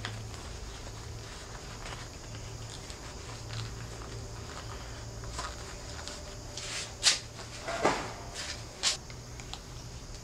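Handling noise of plastic tool-holster belt clips being fitted and a cordless tool being holstered at the belt: a few short, sharp plastic clicks and knocks, the loudest about seven to nine seconds in.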